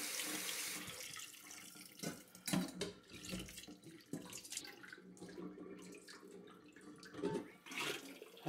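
Cold tap water running into a stainless steel bowl of freshly boiled squid in a sink, shut off about a second in. After that come scattered small splashes and knocks as hands lift the squid out of the water.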